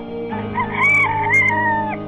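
Rooster crowing once, a single long crow lasting about a second and a half, over background music.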